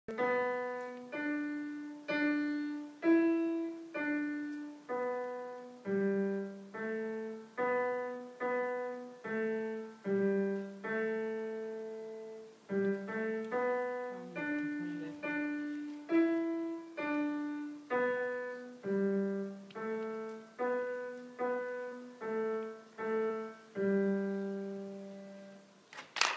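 A child playing a slow, simple piece on the piano: one note or two-note chord about every second, a melody over a low bass note, ending on a held chord that fades away near the end.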